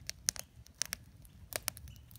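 Wood campfire crackling, with irregular sharp pops scattered through a faint background.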